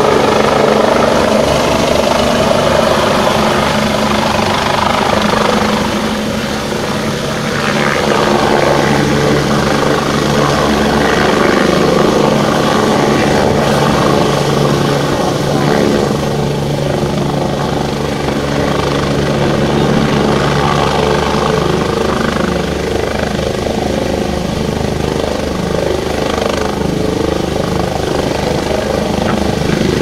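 Helicopter running close by as it descends and sets down: a steady, loud rotor chop with the turbine's whine over it.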